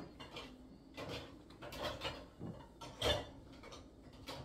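Faint, scattered clicks and light knocks, the loudest about three seconds in.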